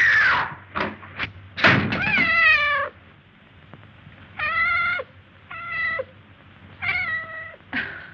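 Cat meowing about five times, the calls short and pitched, with two quick knocks about a second in.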